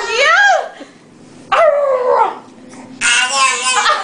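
High-pitched playful squeals and laughter in three bursts: short squeals that rise and fall at once, a long falling squeal about one and a half seconds in, and a burst of laughter near the end.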